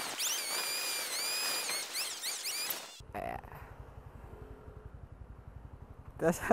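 Bird-like chirping: high whistled calls gliding up and down, many in quick succession. About halfway through it cuts off suddenly and gives way to a quieter motorcycle engine idling low with a steady pulse.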